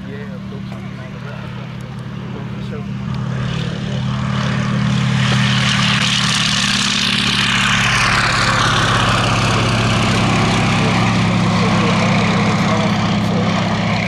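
Fairey Swordfish biplane's Bristol Pegasus nine-cylinder radial engine at full takeoff power with its propeller, growing louder over the first few seconds as the aircraft runs in and lifts off. The pitch drops as it passes, and it stays loud as it climbs away.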